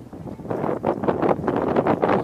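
Wind buffeting the microphone in uneven gusts on a small motorboat underway.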